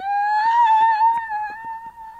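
One long high-pitched note that slides up into its pitch and then holds with a slight waver, fading near the end.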